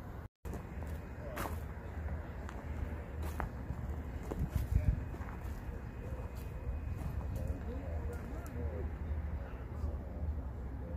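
Outdoor background of a low steady rumble with faint distant voices and a few sharp clicks, the loudest about five seconds in. The sound cuts out completely for a moment just after the start.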